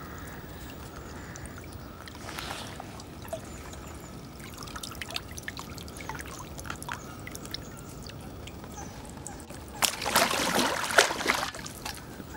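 Water trickling and dripping off a large common carp and the angler's hands and waders as the fish is held in shallow lake water, with small scattered drips. Near the end comes a louder stretch of splashing, about a second and a half long, as the carp is lowered back into the water.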